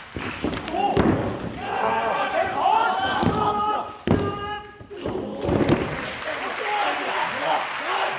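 Thuds of wrestlers' bodies hitting the canvas ring mat, a few sharp impacts spread through the moment, with the referee's hand slapping the mat during a pin count. Shouting voices from the crowd and wrestlers run throughout.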